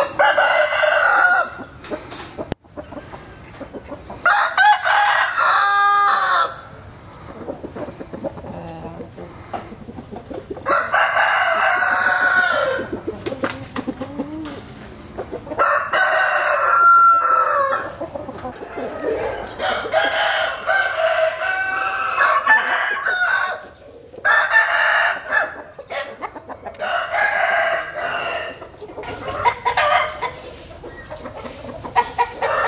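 Roosters crowing again and again: about seven long crows a few seconds apart.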